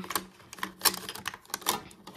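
Metal trading-card-game coins clicking against each other and the inside of a small tin as fingers pick through them: a run of sharp, irregular clicks.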